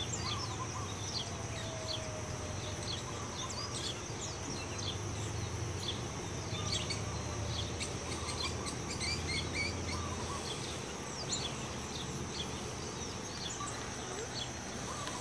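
Many small birds chirping and tweeting, over a steady high insect buzz and a low rumble.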